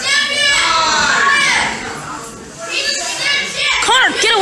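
A young child talking and calling out loudly close by, the voice high-pitched and rising and falling.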